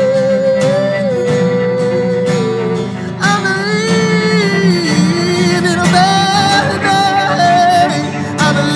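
Acoustic guitar and bowed cello playing a slow passage, with long held melody notes that glide from pitch to pitch over a steady low accompaniment.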